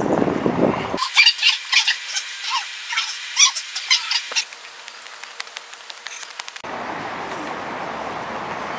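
A run of quick, high-pitched chirps, some sliding in pitch, with a low rumble of wind on the microphone before and after.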